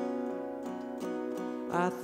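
Acoustic guitar playing a steady accompaniment, struck about three times a second, and a man's singing voice coming in on a rising note near the end.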